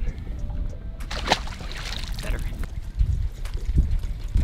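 Wind buffeting an action camera's microphone, a steady low rumble with gusty noise.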